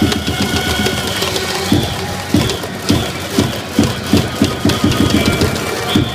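Japanese baseball cheering section's trumpets and drums playing a cheer for the Hiroshima Carp, the drum beats settling to about three a second, with the packed stand of fans joining in.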